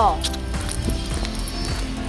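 Footsteps of heeled sandals clicking on stone paving tiles at a steady walking pace, about three steps a second, over background music.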